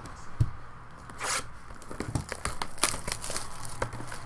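Clear plastic shrink-wrap being torn and crinkled off a sealed box of trading cards. A burst of tearing comes about a second in, followed by scattered crackles and rustles of the plastic.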